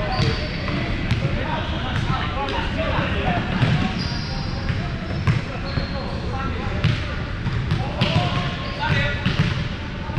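Ambience of a busy indoor sports hall with hardwood courts: balls thudding and bouncing on the floor every second or so, players' voices talking and calling, and a few short high squeaks, all in a large hall.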